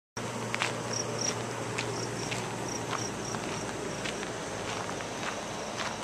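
Footsteps on a gravelly dirt trail, about one step every half to three-quarters of a second, with short high chirps coming in pairs.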